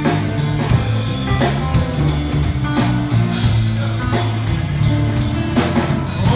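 Live band playing an instrumental passage: electric bass guitar, strummed acoustic guitar and a Pearl drum kit keeping a steady beat.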